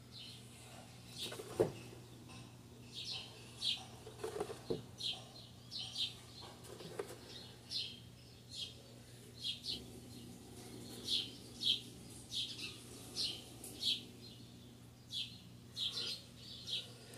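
A small bird chirping over and over, short high chirps one or two a second, with a few soft knocks from a plastic bottle being handled in the first few seconds.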